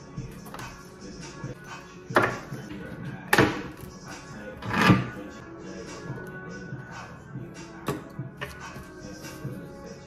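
Background music with a steady beat, over a series of sharp knocks as a skateboard deck is handled and bumped against a wooden desk; the loudest knocks come about two, three and a half and five seconds in.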